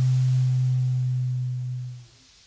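A large square wooden bass recorder holds one long, low, steady note with breathy air noise over it, fading a little before it stops near the end.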